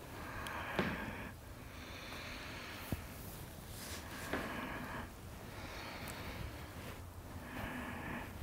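A woman breathing deeply and audibly, mostly through the nose, in a slow series of soft breaths in and out. There is a small click about three seconds in.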